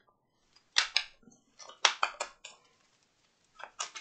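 A tarot deck being shuffled by hand: a scattering of short, sharp card snaps and clicks, bunched about one and two seconds in and again near the end, with quiet between.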